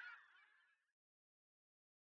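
Near silence: a faint tail of sound dies away within the first second, then the soundtrack is silent.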